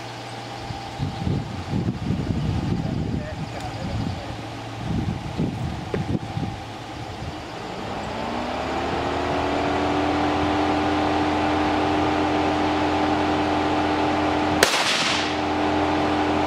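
A single gunshot about fifteen seconds in, the round punching through the glass door of an old electric range set up as a target. Before the shot, a motor's hum rises in pitch and then holds steady.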